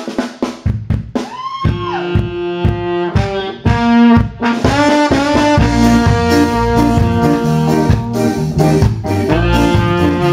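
Live band playing an instrumental intro: a horn section led by trombone carries the melody over drum kit. A horn slides up into the tune about a second and a half in, and the band fills out with a heavier low end about halfway through.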